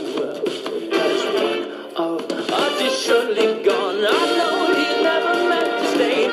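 A recorded love song playing: a singing voice over instrumental backing, holding long notes in the second half. The sound is thin, with no bass.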